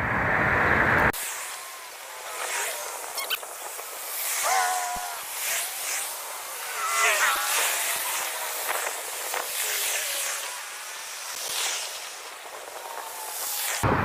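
Faint, distant voices over a steady hiss, thin and tinny with no low end. For the first second or so a louder low rumble is heard, which cuts off abruptly.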